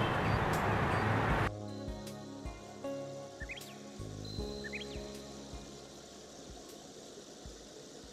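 Street ambience with traffic noise cuts off abruptly about one and a half seconds in, replaced by soft outro music with sustained tones, a slow regular beat and a few short chirps, gradually fading out.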